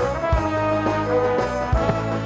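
A live band playing an instrumental passage with no singing: horns hold notes over a steady bass line, with kick-drum thumps about a third of a second in and again near the end.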